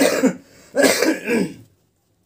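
Two short bursts of a person's voice, the second about a second long, after which the sound cuts off abruptly to silence.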